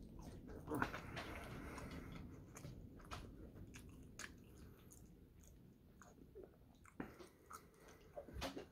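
Close-up mouth sounds of a person chewing French fries: soft smacks and short wet clicks, with a sharper bite about a second in and another near the end.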